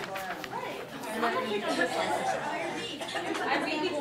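Chatter of several people talking over one another in a large room.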